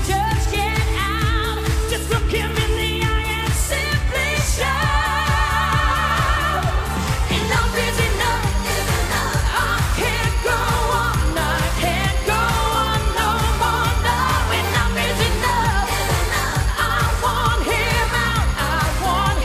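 A woman singing a pop song live into a microphone over a band backing with a steady beat, her held notes wavering with strong vibrato.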